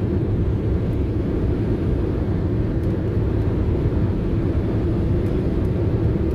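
Steady engine drone and tyre and road noise heard from inside a vehicle's cab cruising at motorway speed, deep and unchanging.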